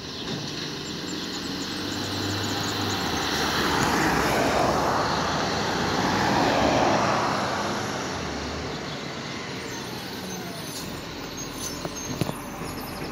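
A pickup drives past close by, its tyre and engine noise swelling to a peak over a few seconds and then fading. Under it a garbage truck's engine runs steadily as the truck approaches.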